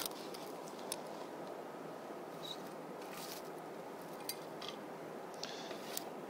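Faint handling sounds: a few light, scattered clicks and rustles as dry wood chips and twigs are picked up for kindling, over a low steady hiss.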